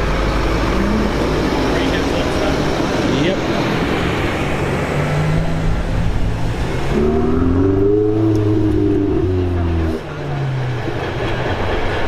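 Traffic rumble as a bus passes, then a Ferrari 488's twin-turbo V8 accelerates away. About seven seconds in, its pitch climbs for a couple of seconds and falls again, and it drops away just after.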